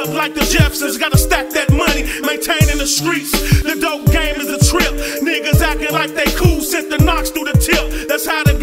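Hip hop track: a rapped vocal over a beat of deep bass kicks and drum hits, with sustained low tones held underneath.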